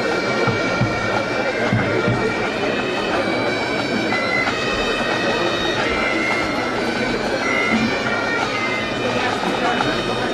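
Pipe band bagpipes playing a march tune, the chanter melody stepping from note to note over the steady drones.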